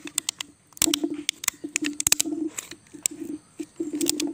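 Thin plastic bottle crackling and creaking as a hand presses and twists it down inside a ridged plastic mould, in a quick, irregular run of clicks.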